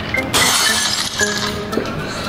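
Recorded glass-shattering sound effect played from a phone: a sudden crash of breaking glass about a third of a second in, with tinkling that fades over the next second. Background music runs underneath.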